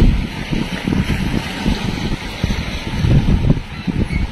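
Wind buffeting the microphone in uneven, low rumbling gusts, over the wash of the Padma river's water along the bank.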